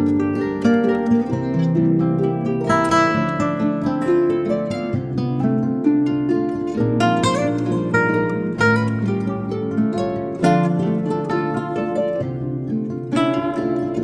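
Harp music: a steady stream of plucked harp notes over sustained low tones.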